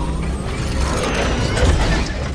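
Logo-reveal sound effects: mechanical ratcheting and whirring as a camera-aperture emblem assembles, over a steady low rumble.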